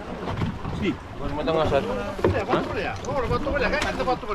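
Several people talking aboard an open boat, starting about a second in, over low wind rumble on the microphone.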